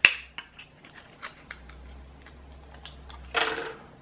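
Clear plastic clamshell packaging of a desktop processor being handled and pried open by hand: a sharp plastic click at the start, then scattered small clicks and crinkles, with a louder half-second rustle near the end.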